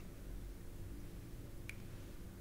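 Quiet room tone with a faint steady hum, and one short, sharp mouth click about three-quarters of the way in as the man pauses mid-sentence.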